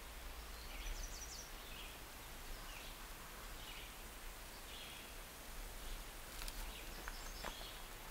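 Quiet outdoor ambience with faint, scattered high chirps of distant birds.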